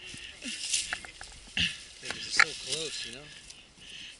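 Scattered clicks, knocks and scrapes from handling a mountain bike caked in thick clay mud, two sharper knocks standing out in the middle. A man's voice speaks briefly near the end.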